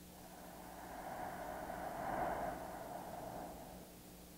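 A man's long, slow breath close to a microphone, swelling to a peak a little past halfway and fading out just before the end: deliberate slow breathing to relax and lower his heart rate.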